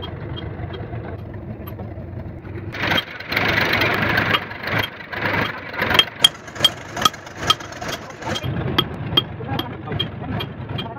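Hammer blows on a steel punch against a rotavator gearbox's cast-iron housing, knocking at a stuck part: sharp ringing metallic strikes, about two to three a second, in the second half, with lighter taps earlier. An engine runs steadily underneath, and a louder noisy stretch comes a few seconds in.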